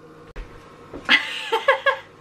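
A woman laughing, high-pitched and squealing: it starts about halfway in as a breathy squeal and then breaks into a few quick bursts.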